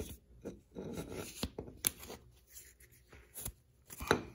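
Rubber tie rod boot being slid and worked over a steel inner tie rod: soft rubbing and scraping, broken by a few sharp clicks of the parts knocking.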